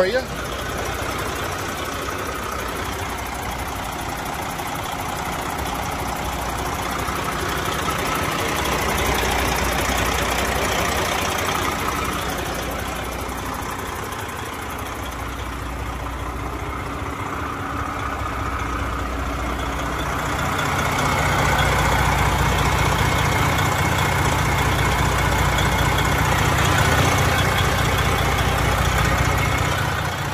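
2005 Freightliner Columbia 120's diesel engine idling steadily, heard with the hood open; it grows louder with a stronger low rumble about two-thirds of the way through.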